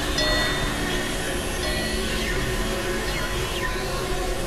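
Experimental synthesizer music: a dense, steady wash of noise with short bell-like tones that pop in and out, and a few faint falling glides in the second half.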